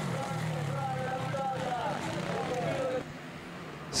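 Motocross bike engines running on the track, their pitch sliding down around the middle as the throttle is eased. The sound drops quieter in the last second.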